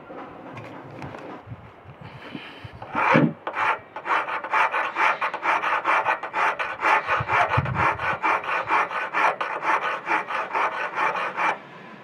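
Hand file scraping across a cut metal tube clamped in a vise, in quick even strokes about four a second, cleaning up the burrs on the cut. The strokes start about three seconds in and stop just before the end.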